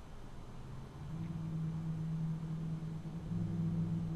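A low, steady hum that starts about a second in over faint background noise.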